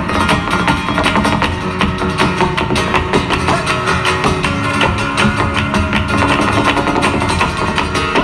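Live flamenco music: acoustic guitar with rhythmic hand-clapping (palmas), a dense run of sharp claps over the guitar.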